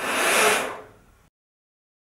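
A person exhaling a long breath onto a Si7021 humidity sensor close to the microphone to raise its humidity reading: a breathy hiss that swells and fades out after about a second.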